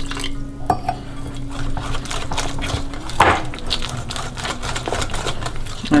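Wire whisk beating a thick jalebi batter of flour and yogurt in a glass bowl: rapid clicks of the wires against the glass with a wet stirring sound, one stronger knock about three seconds in.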